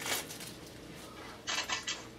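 Faint handling noises from small plastic objects: a light click just after the start, then a brief patch of rustling and ticking near the end.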